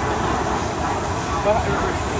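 Steady outdoor background noise with a low rumble and faint, indistinct voices.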